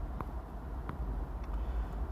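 Low steady background rumble with three faint clicks in a pause between words.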